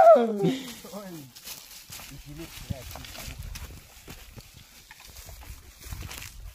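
The tail of a long, loud held call from a person's voice, sliding down in pitch and fading within the first second. After it, quieter footsteps and brushing on a dry trail with faint voices.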